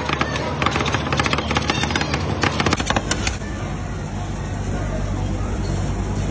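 Two metal spatulas rapidly chopping and scraping on a steel cold plate while rolled ice cream is made, a fast clatter of clicks that stops about three seconds in. After that comes a steady low hum with voices in the background.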